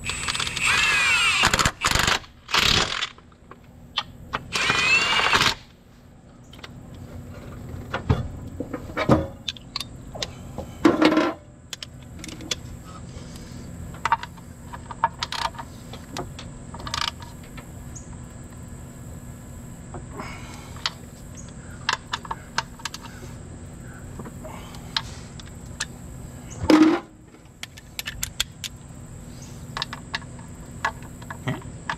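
Cordless Milwaukee Fuel impact wrench run in three bursts in the first few seconds, its pitch sliding as it drives bellhousing bolts. After that come scattered metallic clicks and clinks of a hand ratchet and wrench working on the bolts, with one brief louder noise near the end.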